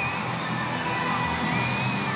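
Ballpark crowd noise, a steady cheering roar with music playing under it.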